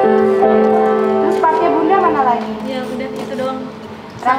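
Upright piano playing held chords, a new chord struck just under half a second in and left ringing, fading away through the second half. A voice slides up and down over it for about a second.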